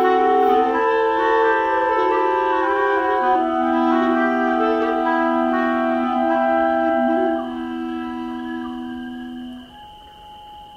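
Double flute playing a slow tune in long held notes, its two pipes sounding two notes together. It grows softer about seven seconds in and dies away near the end.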